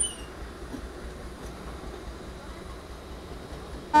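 A passing passenger train rolling along the rails: a steady, even rolling noise.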